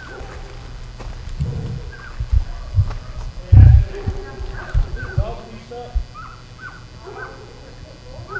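Footsteps on dirt and low thumps, the loudest about three and a half seconds in. From about four seconds in, dogs yap over and over in short high yelps.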